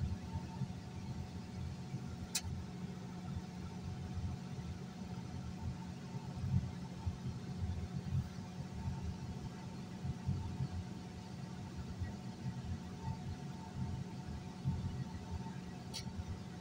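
Bulldozer's diesel engine running steadily, heard from inside the cab as a low rumble with a faint steady whine. A single sharp click comes about two seconds in.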